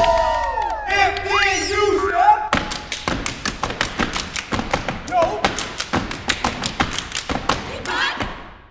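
A group of young people cheering and whooping with long 'woo' calls. From about two and a half seconds in comes a fast rhythm of foot stomps and hand claps in the style of step dancing.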